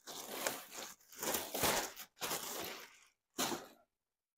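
Packaging crinkling and rustling as a saddle pad is pulled out of it, in four bursts with short gaps, the last one brief and near the end.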